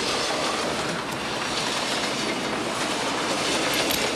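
Cartoon sound effect of a train running at speed: a loud, steady, noisy rush of train wheels on rails.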